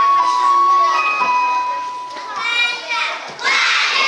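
A class of young children singing a song together over accompanying music, holding long notes. Near the end it breaks into a loud burst of children's voices shouting together.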